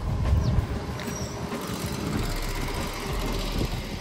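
Street traffic noise, with an uneven low rumble running under it.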